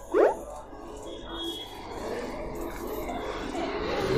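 A person's voice: one short upward-gliding vocal sound near the start, then low, indistinct background sound.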